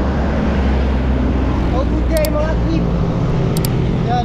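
Wind buffeting a GoPro action camera's microphone as a bicycle rides down a town street, mixed with the steady sound of motor traffic. A voice is heard briefly about halfway through.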